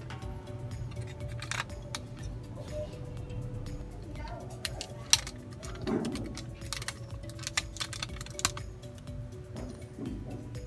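Sharp plastic clicks and snaps of a transforming robot car figure's panels and joints being moved by hand, the loudest a little after five seconds in, over background music with held notes.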